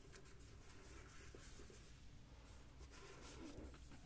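Near silence, with faint rustling of a hand moving over a flat surface.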